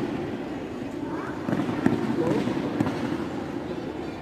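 A few sharp slaps and stamps from a pencak silat solo routine, echoing through a large hall, the loudest about halfway through. Steady background chatter runs under them.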